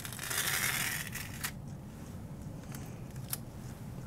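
Blue painter's tape being peeled off a plastic mold from around a fresh epoxy grout strip: a raspy peeling noise for about the first second and a half, then a few faint clicks.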